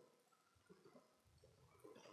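Near silence, with only a few faint scattered noises.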